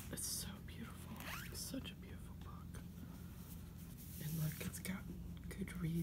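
Soft whispering, with the rustle of a book being handled and turned over.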